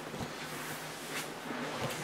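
Faint rustle of hands handling a shrink-wrapped trading-card box, with a couple of light ticks, over a steady low background hum.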